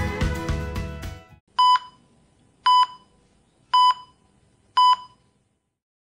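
Background music fades out over the first second or so, followed by four short electronic beeps about a second apart, like a hospital heart monitor's beep.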